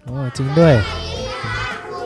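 A group of children calling out a greeting together in chorus, many young voices at once, after a short call from a single voice at the start.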